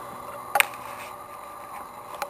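Handling noise on a hand-held camcorder: one sharp knock about half a second in, over a steady faint background hum.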